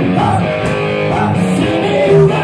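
Live rock band playing loud, sustained electric guitar chords over drums.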